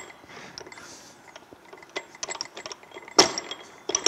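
Metal-on-metal clicks and light clanks as the rotor of the Honda E-Drive hybrid transaxle's drive motor is slid down over its shaft and motor gear. A run of quick ticks comes about two seconds in, and one louder knock a little after three seconds.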